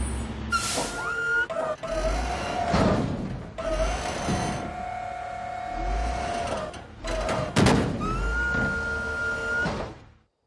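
Automated side-loader garbage truck picking up a wheeled bin. A steady whine from the hydraulic arm comes near the start and again near the end, with a long held tone in the middle and several heavy thuds as the bin is lifted, tipped into the hopper and set back down.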